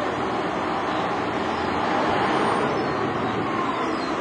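Open-top double-decker bus's diesel engine running as the bus drives past close by, with street traffic around it; the sound swells to its loudest about halfway through.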